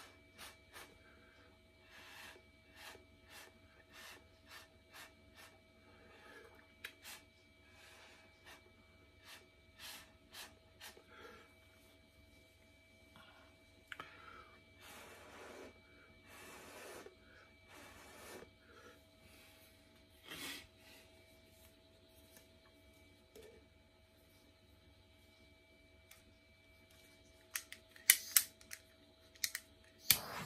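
Short puffs of breath blown through a straw onto wet acrylic paint, spreading it across the canvas, about one every second with a few longer blows midway. A few sharp clicks near the end.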